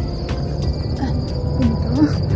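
Crickets in a grassy field, a steady high-pitched trill, over a low rumble of wind on the microphone.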